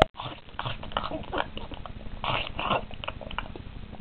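A person making quick, irregular chomping and smacking mouth noises, like someone eating greedily.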